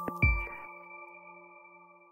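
Closing notes of an electronic logo jingle: a short low hit just after the start, then a bell-like chord of several tones that rings on and fades out.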